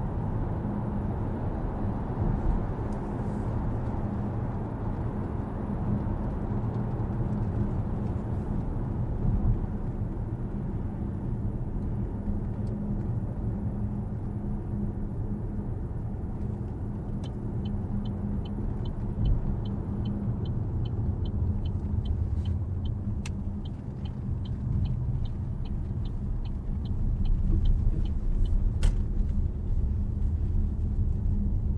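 Cabin noise inside a moving 2023 Opel Grandland GSe plug-in hybrid: steady tyre and road rumble. In the second half the turn-signal indicator ticks about twice a second for roughly twelve seconds, and one sharp click comes near the end.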